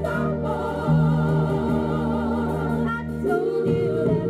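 A 7-inch vinyl single playing on a turntable: singing, with long held notes, over a steady bass line; the sung pitch shifts a little after three seconds in.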